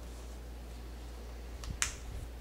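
The snap on a cloth diaper cover's snap-down front panel being pressed shut by hand: a faint click, then one sharp click near the end, over a steady low hum.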